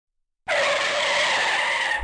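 Car tyre screech used as a sound effect, starting about half a second in out of silence, holding steady for about a second and a half, then cutting off abruptly.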